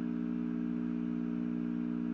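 A steady low hum made of a few held low tones, unchanging throughout.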